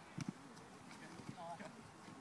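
A soccer ball kicked on a grass pitch: a couple of sharp knocks just after the start, over quiet open-field ambience, with a faint distant shout about one and a half seconds in.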